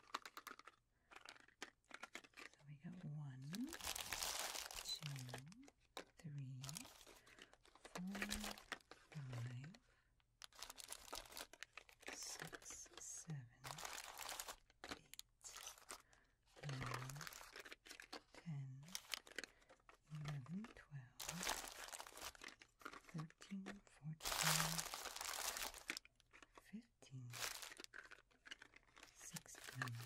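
Plastic fun-size candy wrappers crinkling and small cardboard Milk Duds boxes being picked up and set down as the candy is sorted by hand, in bursts every few seconds.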